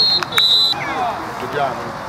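Referee's whistle blown twice, a short blast and then a longer one of under half a second, blowing the play dead after a tackle. Voices of players and spectators carry on underneath.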